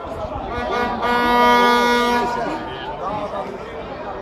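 A horn blowing one long steady note for about two seconds, the loudest sound here, with people chattering around it.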